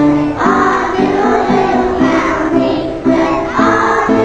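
A group of young children singing a song together, with notes changing every half second or so.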